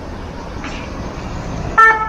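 A single short toot of a fire brigade van's horn near the end, at one steady pitch, over a steady low rumble of wind and road noise.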